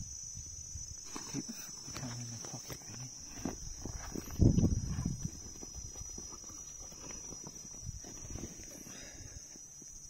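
A steady, high-pitched insect chorus, with a series of irregular knocks and clicks. The loudest is a heavy thump about four and a half seconds in.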